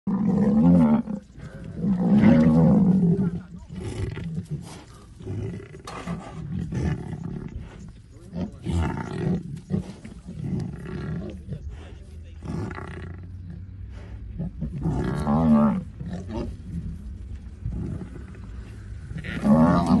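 Deep, loud animal calls from lionesses attacking a Cape buffalo and her newborn calf. The calls come in separate bouts: the strongest fall near the start, about two seconds in, around fifteen seconds and near the end, with quieter calls between.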